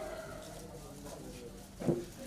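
Low, indistinct murmur of voices from people gathered around, with one short loud sound just before the end.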